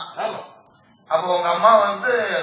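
Crickets chirring steadily and high-pitched. A man's voice through the stage microphones comes in briefly at the start and again strongly from about a second in.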